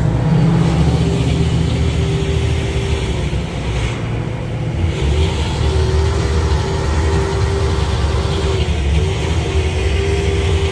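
Slurry seal truck and its mixing machinery running steadily close by: a low engine drone with a steady whine on top that drops out and returns a few times.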